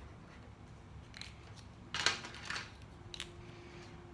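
Felt-tip markers being handled on a table: a few short clicks and scrapes, the loudest about two seconds in, as one marker is capped and put down and another is uncapped.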